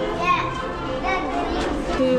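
Children's voices and excited chatter over background music with steady sustained notes.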